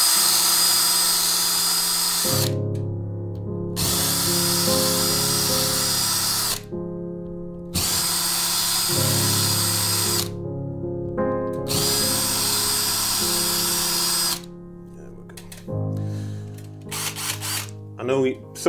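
Cordless drill with an 8 mm masonry bit boring four holes in a plasterboard ceiling, each run lasting about two and a half seconds with a steady high motor whine, stopping between holes. The holes are being opened out slightly to take hollow wall anchors. Background music plays under and between the runs.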